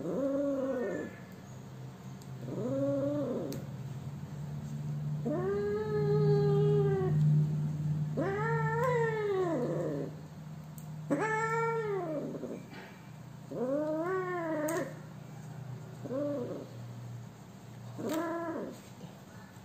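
Cat meowing over and over, about seven drawn-out cries that each rise and fall in pitch, the longest lasting around two seconds, as gloved hands handle it.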